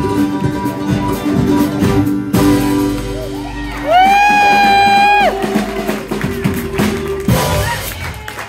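Live bluegrass-country band with guitars, banjo, mandolin, bass, keyboard and drums playing the closing bars of a song: the beat stops about two seconds in and the band holds a final chord. A high note is held for about a second and a half in the middle, and a sharp final hit comes near the end.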